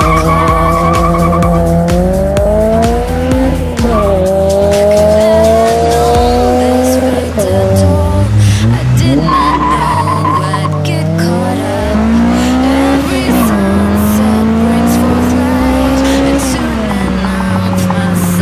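Modified 2000 Toyota Celica GTS's 1.8-litre 2ZZ-GE four-cylinder engine, running a straight-through catless exhaust with an HKS Hi-Power muffler, under acceleration. The revs climb and drop back at each gear change several times over, with music playing underneath.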